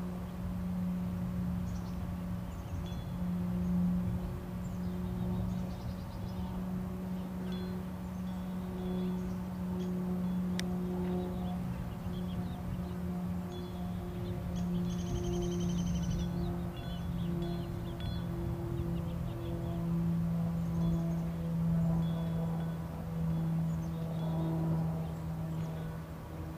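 A steady low-pitched hum with fainter overtones, holding nearly one pitch and shifting slightly about two-thirds of the way through. Under it is a low rumble, and faint high bird chirps, with a short trill about halfway through.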